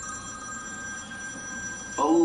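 A steady electronic ringing tone, several pitches held together, that starts suddenly and cuts off after about two seconds, over a low room hum.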